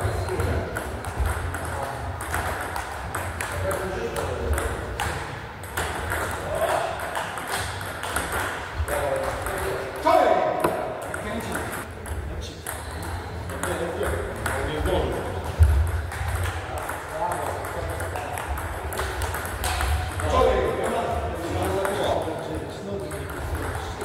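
Table tennis rallies: the ball clicking sharply off the rubber bats and the table in quick exchanges, with a steady low hum underneath.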